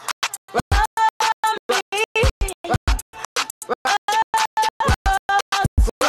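Background music chopped into rapid, even pulses of about five a second, each pulse carrying the same held notes.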